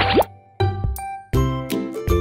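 Light children's-style background music with short, sharply struck notes over a bass line, with a quick pitch slide right at the start and a brief drop-out about half a second in.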